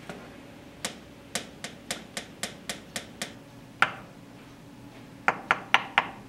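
A pen tapping on a wooden desktop: a run of about eight taps at roughly four a second, then one louder tap, then a quick burst of three or four taps near the end.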